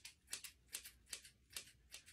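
Faint, quick snips of ordinary household scissors cutting into hair, point-cutting bangs, about four snips a second.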